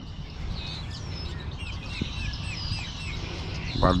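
A bird calling: a quick run of about six short chirps, a few a second, about halfway through, over a steady low background rumble.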